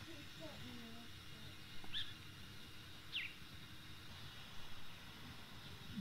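Quiet outdoor ambience with two short, high chirps from a bird, about two and three seconds in, and faint voices in the first second.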